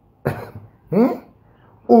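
A man coughs twice, two short voiced coughs about two-thirds of a second apart, before speaking again at the end.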